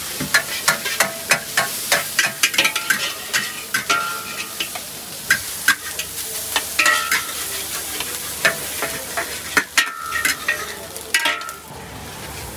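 Stir-frying in a wok: a metal spatula scraping and striking the metal wok in quick, uneven strokes over the sizzle of frying food. Several of the strikes ring with a metallic tone.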